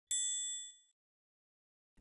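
A single high-pitched, bell-like ding, struck once and ringing for under a second as it fades out.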